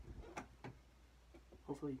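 Three light, sharp clicks within the first second, from handling the ring light's cable and its plastic inline controller as it is plugged in and picked up. A voice starts near the end.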